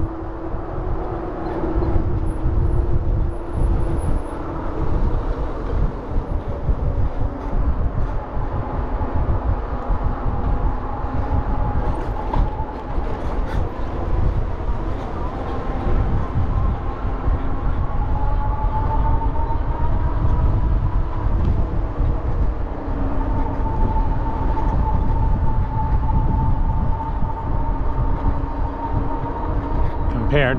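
Wind buffeting the microphone and tyre noise from a bicycle riding along a paved path. A faint steady whine runs underneath and slowly rises and falls in pitch.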